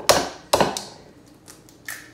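An egg knocked twice against the rim of a ceramic bowl to crack its shell: two sharp taps about half a second apart, then a couple of faint clicks as the shell is pulled apart.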